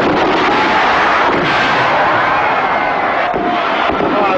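Fireworks going off in quick succession, a steady dense din of bursts and crackle with no break.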